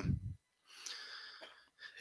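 The tail of a drawn-out "um", then a faint breath drawn in for under a second before speaking resumes.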